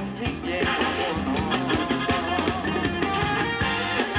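Live Thai ramwong band music played over the stage sound system, with a steady drum beat under sustained melody lines.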